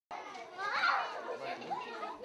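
A group of young children talking over one another, their high voices overlapping, loudest about a second in.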